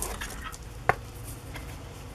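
Light handling of a handmade paper journal and a plastic ruler on a tabletop, with one sharp tap about a second in as the ruler is brought against the book.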